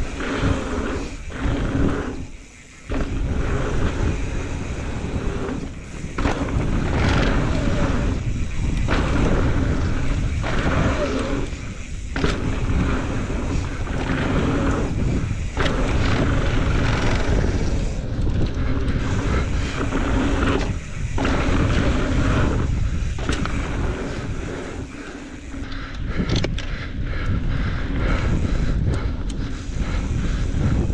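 Wind rushing over a helmet-mounted camera's microphone and mountain bike tyres rolling on dry dirt trail while riding fast downhill, with occasional knocks from the bike over bumps and jumps. The rush dips briefly a few times, most deeply about two and a half seconds in.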